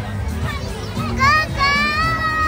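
A young child's high-pitched squeal that rises sharply about a second in and is then held, loud over a background of crowd chatter and music.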